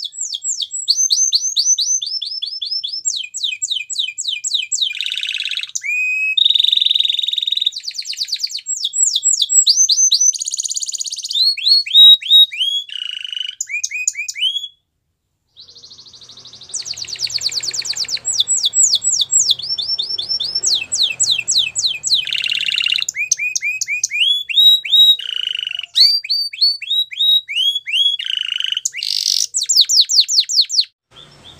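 Domestic canary singing: long runs of fast, repeated down-slurred notes that change speed and pitch from phrase to phrase, with a brief silence about halfway through.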